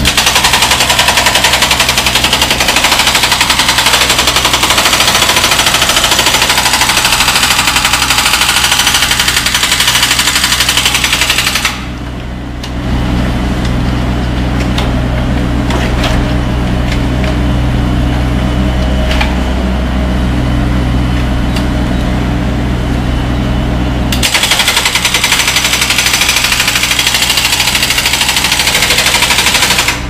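Excavator-mounted hydraulic breaker hammering rapidly against the base of a reinforced concrete pile, opening the crack along the pile head's cut line. The hammering stops about 12 seconds in, leaving only the excavator's engine running, and starts again about 24 seconds in.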